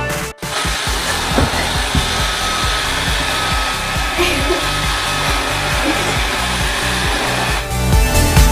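bObsweep PetHair robot vacuum running: a steady whirring motor and suction noise with a thin steady whine. It starts about half a second in and gives way to music just before the end, with a music beat faintly underneath.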